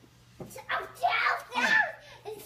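A young child talking in a high voice, two quick phrases in the second half, after a quiet first half-second.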